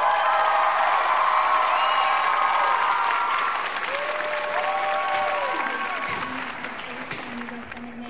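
Audience applauding and cheering with high shouts as a show choir number ends. Loud at first, the applause fades over the second half, and a low steady note comes in near the end.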